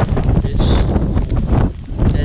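Gusty wind from an approaching thunderstorm buffeting the microphone of a hand-held action camera, a heavy, uneven rumble that dips briefly near the end.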